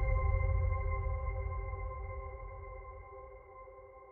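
Outro background music ending on one held electronic chord that fades steadily away.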